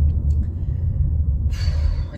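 Steady low rumble of a car's running engine heard inside the cabin, with a short breath near the end.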